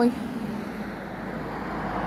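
Steady road traffic noise from a nearby main road, a vehicle's low rumble swelling towards the end.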